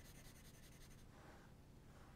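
Faint pencil on paper: quick, evenly repeated hatching strokes in the first half, then a softer continuous rub as a pine tree is shaded in.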